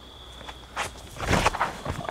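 Footsteps and shoe scuffs of a disc golfer's run-up and drive on a paved tee pad, getting louder about halfway through as the throw is made.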